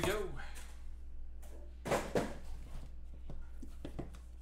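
Sealed trading-card packs being handled on a tabletop: a few light rustles and two short knocks close together about two seconds in, over a steady low hum.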